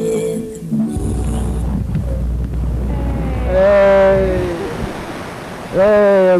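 The show's theme music ends about a second in, giving way to a loud rushing noise with a low rumble. About three and a half seconds in, a long drawn-out voice-like note falls in pitch over it.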